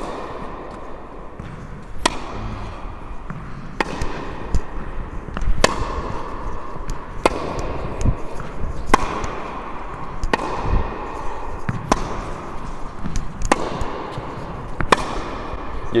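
Tennis ball hit back and forth in a baseline rally, with the Wilson Clash V2 racket in play. There are sharp racket strikes and ball bounces about every one and a half to two seconds, echoing in an indoor hall.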